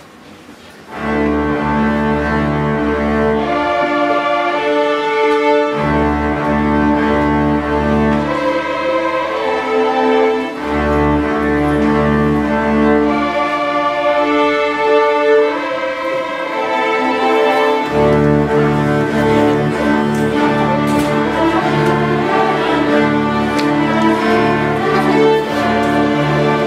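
A school string orchestra of violins, cellos and double basses plays sustained chords over a heavy low bass line. The music starts abruptly about a second in.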